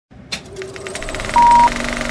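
Old film-countdown intro sound effect: a film projector running with rapid ticking and crackle, and one short, loud high beep about one and a half seconds in.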